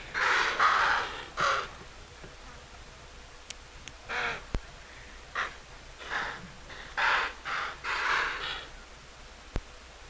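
A herd of impala giving harsh alarm snorts in a ragged chorus, about ten short calls from several animals at uneven intervals. They are sounding the alarm at leopards close by.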